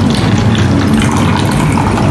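Water being poured from a small plastic cup into a clear plastic cup of sugar, under a steady, loud background hiss.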